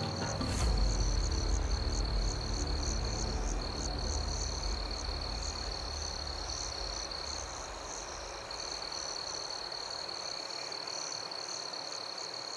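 Night-time countryside ambience sound effect: crickets and other insects chirring steadily in a high tone with regular chirps above it, with frogs in the mix. A low rumbling drone under it slowly fades away over the first eight seconds or so.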